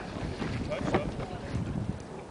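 Wind buffeting the microphone in uneven low rumbles, with faint voices calling in the distance.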